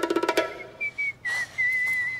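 Music with fast, ticking percussion ends about half a second in. Then a man whistles a short tune: a couple of quick notes, then one long held note.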